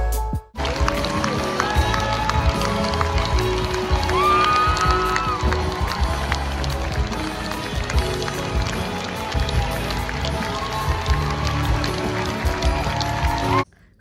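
Live theatre orchestra playing the curtain-call music, with an audience clapping throughout; it cuts off suddenly shortly before the end.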